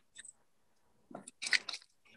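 Potting substrate crunching and a plastic pot crinkling as hands press the mix down around an orchid, in a few short bursts from about a second in, after a faint scrape at the start.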